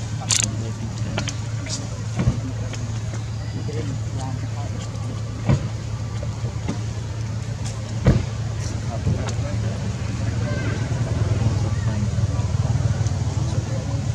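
A steady low engine hum, a little stronger after about ten seconds, with faint indistinct voices and a few short sharp clicks, the loudest about eight seconds in.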